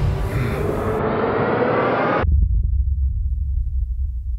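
Dramatic sound-design effect: a dense rushing swell that cuts off abruptly about two seconds in and leaves a low rumbling drone.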